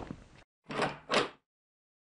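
Intro sound effects: the fading tail of a sharp knock, then two short swishes under half a second apart, with dead silence between them.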